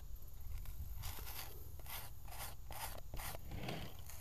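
Red plastic putty knife scraping wood filler smooth into screw holes on a wooden door frame: a run of short, faint scraping strokes, several a second, over a low rumble.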